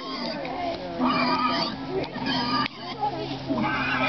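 Girls' voices chattering and calling while pigs grunt, over a steady low hum.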